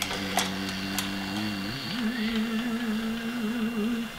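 Battery-powered beehive lifter's electric motor whining steadily as it drives the lift down, with a couple of clicks as it starts. About halfway through the pitch dips, then settles a little higher and wavers slightly.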